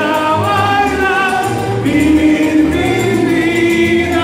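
Music with several voices singing together over a steady bass line.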